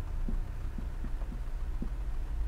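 A whiteboard marker writing on a whiteboard: about six faint short strokes over a low steady hum.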